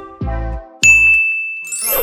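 The tail of an electronic intro track with a falling bass note, then a single bright chime sound effect strikes about a second in and rings on, held steady and slowly fading.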